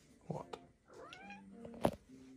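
Domestic cat meowing once with a rising call about a second in, then a sharp click near the end.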